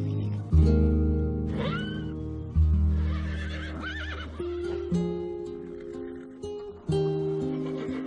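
Song accompaniment with held bass and chord notes, over which a foal whinnies twice: a short rising call about a second and a half in, and a longer, wavering one a little later.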